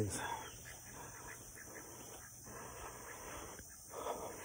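Faint background of a chicken run, with quiet sounds from the hens and no loud event.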